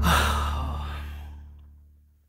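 The tail of a dramatic background-music sting: a breathy rushing noise over a low held bass note, both fading out over about two seconds.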